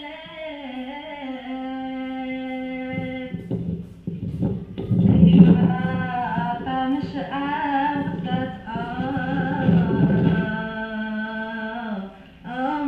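A woman singing a hawfi, the Tlemcen women's folk song, in long ornamented held phrases. About four seconds in the sound grows fuller and louder, with a dense low accompaniment under the voice.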